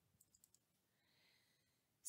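Near silence, with three or four faint computer-mouse clicks in the first half second.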